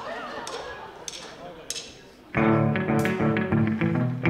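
A few sharp ticks spaced about half a second apart, then, about two and a half seconds in, a live rock band starts playing loudly with drum kit, bass guitar, electric guitar and keyboard.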